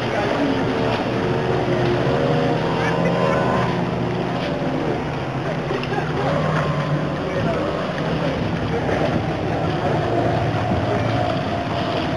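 Distant racing speedboats, a 21-foot Superboat and a 22-foot Velocity, with their engines droning steadily as they run across the water.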